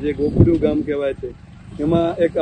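A man speaking, with a short pause past the middle, over a low steady rumble.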